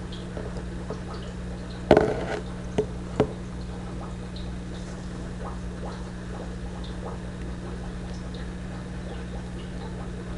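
Steady low electrical hum, with a brief rustle about two seconds in and two soft clicks shortly after, from fingers handling the dubbing and thread at the fly-tying vise.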